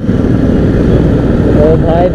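Riding sound from a camera on a moving motorcycle: wind rushing over the microphone with the bike's engine running underneath. A man's voice starts near the end.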